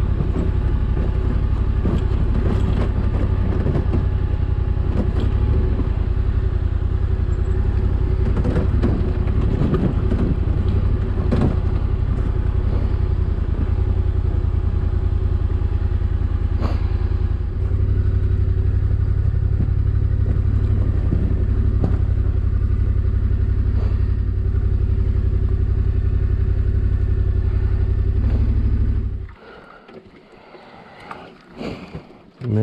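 Adventure motorcycle engine running at low, steady revs on a rough rocky dirt track, with stones and the bike clattering over the rocks. The engine sound cuts off about a second before the end.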